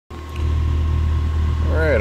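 A steady low mechanical hum from the generator and the air conditioner it powers, with a man's voice starting near the end.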